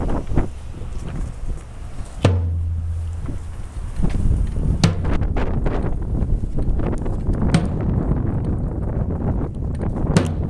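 A hand-carried drum beaten with a stick in a slow, steady beat: three strokes about two and a half seconds apart, each with a short low boom. It sets the pace of a silent marching procession.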